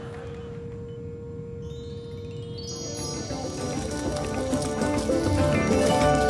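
Electronic sci-fi sound effect: a steady hum tone, joined about a second and a half in by a rising sweep that swells into dense, louder electronic music.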